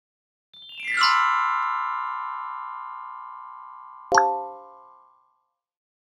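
Short outro jingle: a brief swell into a bright, chime-like chord that rings and fades away over about three seconds, then a second, lower chime struck about four seconds in that dies out within a second.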